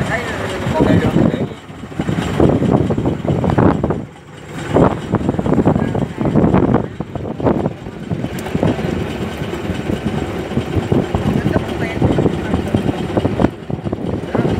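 Fishing boat's engine running steadily, with indistinct voices of the crew over it.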